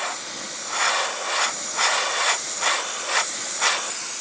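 Gravity-feed airbrush spraying paint at about 20–25 psi: a steady hiss of compressed air through the nozzle. From about a second in, it pulses louder about two to three times a second.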